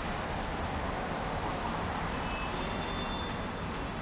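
Steady hum of distant road traffic.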